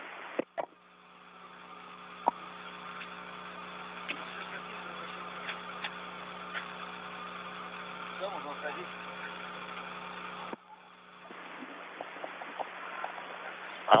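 Steady hum of the International Space Station's cabin fans and equipment, with faint voices of the crew at the hatch and a few light clicks. The hum drops away suddenly about ten seconds in, then comes back.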